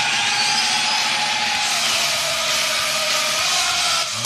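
Steady mechanical noise, like a motor or power tool running, that starts abruptly and holds an even level. Under it a faint tone drifts slightly downward.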